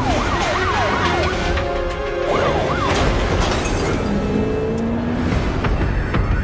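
Police car sirens sweeping rapidly up and down in pitch over a low engine rumble, with a music score. The sweeps stop about three seconds in.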